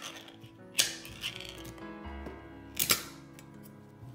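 Background music, over which the metal pull-tab lid of a tin of Spam is peeled off and the can is handled: three sharp metallic rasps and clanks, just at the start, just under a second in and about three seconds in.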